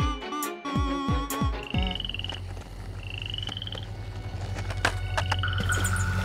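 A musical jingle with drum beats ends about two seconds in. Night-time pond ambience follows: a steady low hum with three high trilling frog calls, each under a second long.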